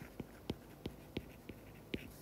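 Stylus tip tapping and ticking on a tablet's glass screen while handwriting, a faint series of short ticks, roughly three a second.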